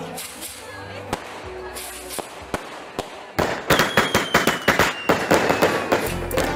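A run of sharp cracks and pops: scattered at first, then coming thick and fast over the second half, with a faint high whistle sliding slowly down in pitch.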